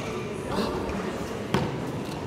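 Hoofbeats of a horse landing from a jump and moving off across the arena's sand, with a sharp knock about one and a half seconds in standing out as the loudest sound.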